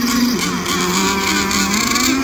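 Nitro engines of 1/8-scale RC hydroplanes running at high revs: one steady high note that drops to a slightly lower pitch about a third of a second in, with other engines' pitches wavering above it.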